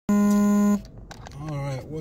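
A single loud electronic buzzing beep, one steady low tone lasting about two-thirds of a second, right at the start.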